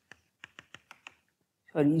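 Chalk tapping and clicking on a chalkboard: a single sharp tick, then a quick run of five taps about six a second as dots are chalked in. A man's voice starts a word near the end.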